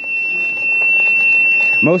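Golf cart's reverse warning beeper sounding one steady, unbroken high-pitched tone while the cart backs up, over a steady rushing noise.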